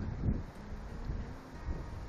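Wind buffeting the microphone: an uneven low rumble with no other clear sound.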